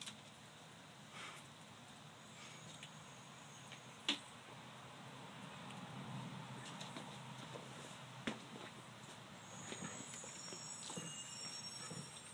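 Quiet room tone with a few scattered light taps and clicks, the clearest about four seconds in and again a little past eight seconds; faint high-pitched tones come in near the end.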